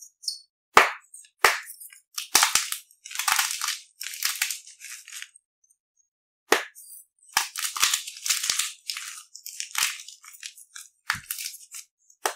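Dyed chalk cubes crushed between the fingers: a run of short, crisp crunches and crumbling, with a pause of about a second near the middle before the crunching starts again.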